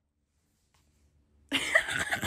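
Near silence, then a sudden cough-like burst about one and a half seconds in.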